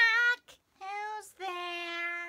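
A woman singing short phrases in a high, childlike character voice, the last note held steady for about a second.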